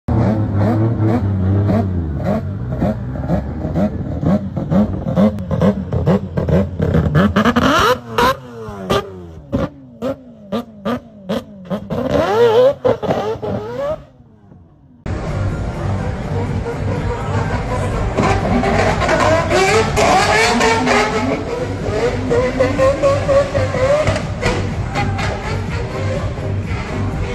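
Drift car engines revving hard, the pitch sweeping up and down again and again as the throttle is worked. There is a short drop-out about halfway through, then more engine noise from cars on track.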